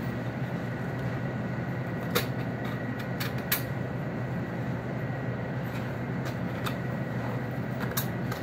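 A boning knife working meat off a back bone with ribs, its blade giving scattered sharp clicks against bone, two of them louder about two and three and a half seconds in, over a steady low hum.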